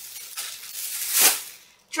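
Plastic bag rustling and crinkling as it is handled, with one louder crinkle a little past the middle.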